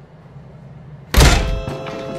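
A single heavy thud about a second in, followed by music with held, steady notes.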